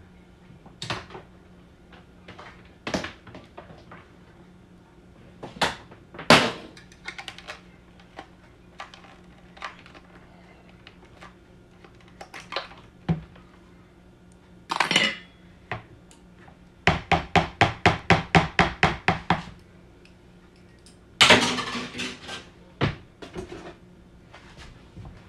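Kitchen utensils clattering: scattered clicks and knocks, a quick run of about a dozen evenly spaced taps a little past halfway, and a louder clatter near the end.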